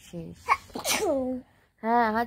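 A woman sneezes: a sharp catch about half a second in and a loud burst with a falling voiced tail around a second. She speaks briefly near the end.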